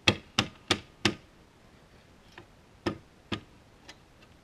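Sharp knocks and clicks from a corded circular saw being handled on a plywood sheet. There are four quick ones in the first second and two more about three seconds in, with no motor running.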